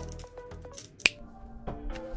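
Soft background music with a single sharp finger snap about a second in.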